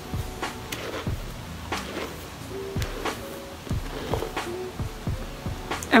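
A detangling brush drawn again and again through wet, rice-water-soaked hair, in irregular strokes about twice a second, with a few faint, short, soft tones underneath.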